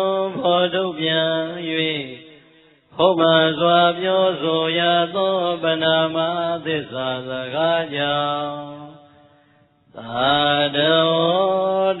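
A man's voice chanting Buddhist Pali verses in a drawn-out, melodic recitation. It fades out twice for a breath, about two and a half seconds in and again around nine seconds, before taking up the chant again.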